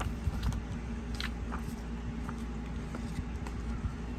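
Paper booklet pages and small card inserts being handled on a table: a few light, scattered rustles and taps, over a steady low hum.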